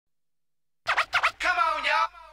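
Silence for most of a second, then a hip-hop track opens with a few quick turntable scratches. A longer stretch of scratched, voice-like sound that wavers in pitch follows.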